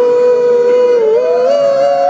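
A single voice sustaining one long sung 'ooh' note, held steady, wobbling briefly about halfway through and then sliding up a little to a higher held pitch, as in a vocal glide exercise.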